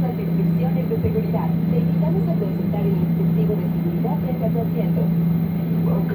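Airliner cabin during taxi: a steady low hum from the aircraft, with indistinct voices of other passengers talking over it.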